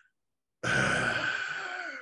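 A man's long, breathy sigh, starting about half a second in and trailing off over about a second and a half.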